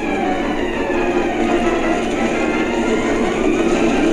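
Loud, steady rush of churning water from an animated film's soundtrack, heard through a TV speaker.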